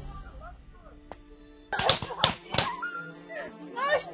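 Paintball marker firing three sharp shots in quick succession, about half a second apart, after a faint click.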